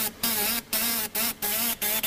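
Metal-marking machine's stylus buzzing against a metal strip in short bursts, about three a second, as it marks characters, with brief pauses between strokes.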